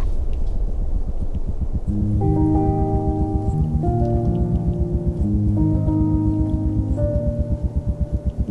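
Background music of slow, held chords that come in about two seconds in, laid over a fast, even low throbbing like a helicopter's rotor.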